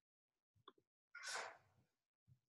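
A person's faint, sharp breath into a microphone, lasting under a second, with a small click just before it.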